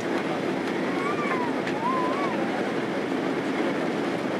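Steady rumble of engines and rushing air inside the cabin of a Boeing 767-300 on final approach with flaps fully extended, moments before touchdown.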